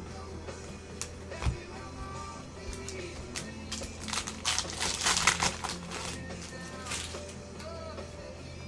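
Background music plays throughout. Clicks and rustling come from handling sealed trading-card foil packs, with a dense burst of crinkling about halfway through.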